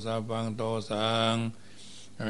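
A man chanting Buddhist Pali verses in a steady monotone, the voice held on nearly one pitch, pausing for breath about a second and a half in.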